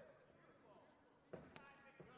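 Quiet arena ambience, then about one and a half seconds in a strike lands on the body with a sharp slap, followed at once by a short shout.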